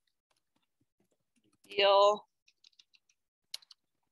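A brief voiced sound from a person about halfway through, followed by a few light computer keyboard keystrokes as text is typed.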